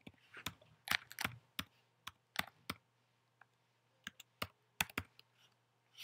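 Typing on a computer keyboard: a run of irregular key clicks, with a pause of about a second midway.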